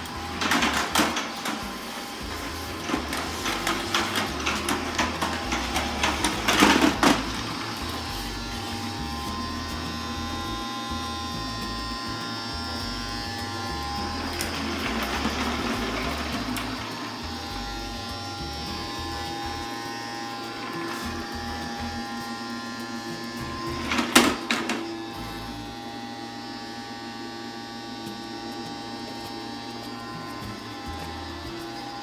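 Casdon Henry toy vacuum cleaner's small battery motor running steadily, with a run of clattering knocks over the first several seconds and another short cluster about 24 seconds in.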